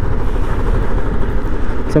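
Royal Enfield single-cylinder 350 cc motorcycle engine running steadily at low speed, a dense low rumble, heard from the rider's helmet-mounted camera.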